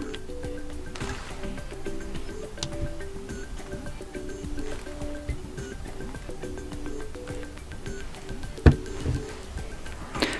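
Soft background music, a simple melody of short stepping notes. A single sharp click near the end.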